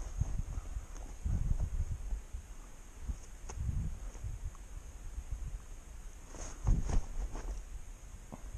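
Footsteps in snow with rustling handling noise on the camera microphone, in irregular clusters, loudest about seven seconds in.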